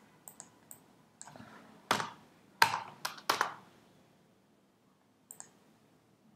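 Computer keyboard keys being pressed while a browser URL is edited: a few light taps, then four louder key strikes about two to three and a half seconds in, and a last faint pair of taps near the end.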